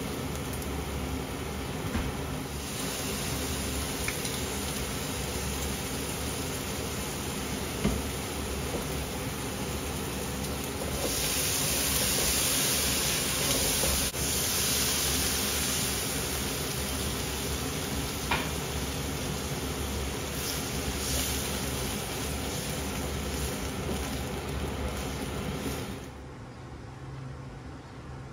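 Meat, onion and garlic sizzling in a wok on a gas hob, with a steady frying hiss and now and then a click of the wooden spatula against the pan. The sizzle grows louder and hissier for a few seconds about eleven seconds in. Near the end it stops suddenly, leaving a quieter steady hush.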